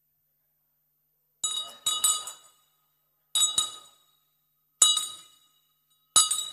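Wine glass tapped to call a room to order: four bright, ringing clinks, the first about a second and a half in, a second half a second later, then two more at intervals of about a second and a half, each dying away.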